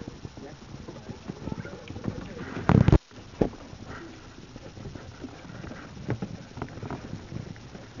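Dogs' claws clicking on wooden deck boards in scattered light taps. A loud thump just under three seconds in cuts off suddenly.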